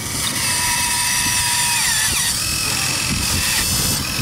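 Electric motors of a Huina 1580 remote-control excavator whining as the arm and bucket dig into dirt, the pitch dropping and changing about halfway through.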